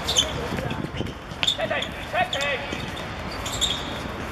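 A handball bouncing and being caught on a hard outdoor court, a few sharp knocks, with players' short shouts between them.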